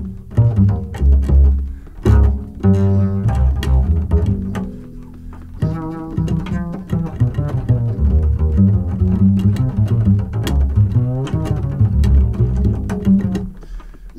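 Jazz piano trio playing, with the plucked double bass prominent in the low end.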